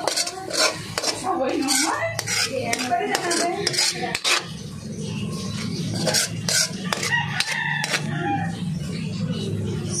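A metal spoon scrapes and clinks against an aluminium pan as chopped onion and garlic are stirred in butter. A rooster crows repeatedly in the background.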